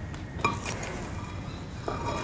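Two light clinking knocks, one about half a second in and a weaker one near the end, each with a short ring, as boards and ramp pieces are handled and set down on a paver driveway.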